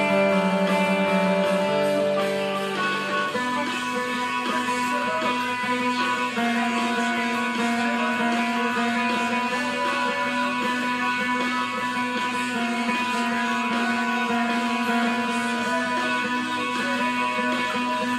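Electric guitar through a mild compressor, picking ringing chords whose notes sustain and overlap, with a change to a new chord about three seconds in.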